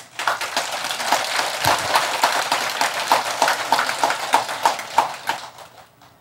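Audience applauding, a dense patter of many hands clapping that fades out near the end.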